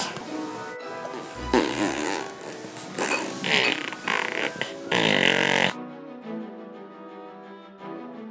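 A string of long, rough fart noises, about three loud ones, over background music. The farting stops about two-thirds of the way through and the music carries on alone.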